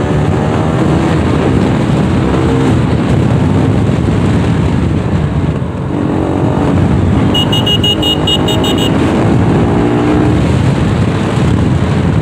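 Motorcycle engine and road noise while riding in traffic, the engine note rising and falling with the throttle. About seven and a half seconds in, a quick run of high electronic beeps sounds for about a second and a half.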